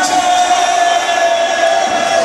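Noha recitation: a male reciter holds one long sung note through a microphone, over the voices of a large crowd of mourners.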